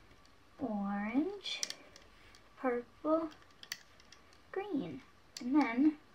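A girl's voice saying a few short words, likely the band colours, with a few light clicks of small rubber bands being stretched onto a plastic Rainbow Loom pegboard between them.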